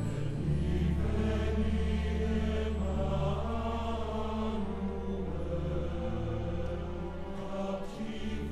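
Choir singing a Christmas carol slowly in long held notes, over a steady low bass note.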